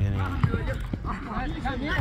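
People's voices calling out and talking during a youth football match, in short bursts with brief gaps.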